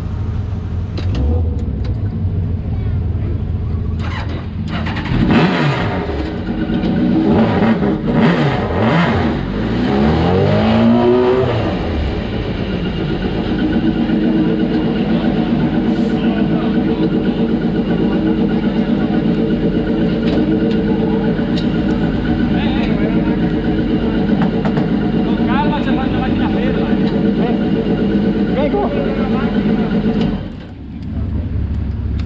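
Suzuki Hayabusa motorcycle engine in a single-seater hillclimb prototype running at idle, revved up and down in a string of blips from about five to twelve seconds in, then running steadily.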